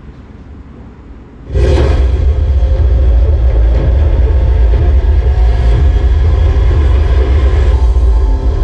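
A loud, deep bass rumble with a droning music bed cuts in suddenly about a second and a half in and holds steady: a cinematic presentation soundtrack played over a hall's sound system.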